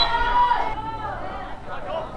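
Several voices shouting and calling out during a youth football match, high-pitched and in short bursts.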